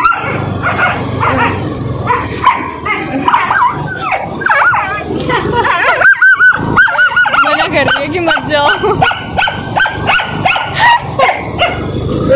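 Several street dogs barking and yelping repeatedly at a passing scooter as they chase it, a rapid run of short, sharp calls.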